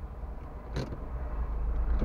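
Low rumble of a car heard from inside its cabin, growing louder near the end, with one sharp knock about a second in.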